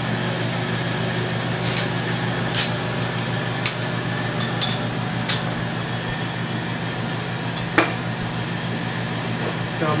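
A steady low electrical hum over a faint hiss, with a few light clicks scattered through and one sharper tap about eight seconds in.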